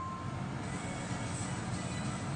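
A phone's notification chime fading out in the first instant, then a low, steady rumble with faint background music under it.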